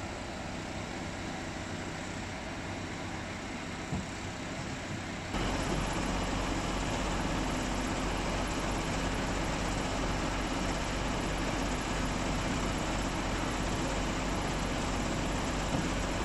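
Steady idling of vehicle engines, a low continuous hum. About five seconds in it changes abruptly, becoming louder and deeper, and then holds steady.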